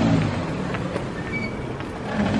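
City street traffic: a vehicle's engine running with a low steady hum that fades about half a second in, over a general wash of traffic noise.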